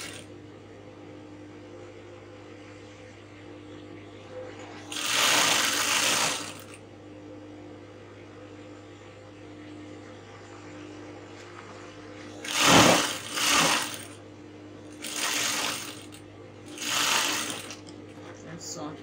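Sewing machine stitching a corset panel seam in four short runs, the first about five seconds in and the last three close together near the end, with a steady low hum between them.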